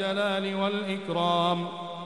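A man's voice chanting one long held note with a wavering, ornamented melody, in the style of Islamic religious recitation.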